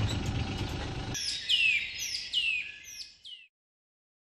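Outdoor background noise with a low rumble, then from about a second in a bird calling a quick series of high, downward-sliding chirps, before the sound cuts off suddenly.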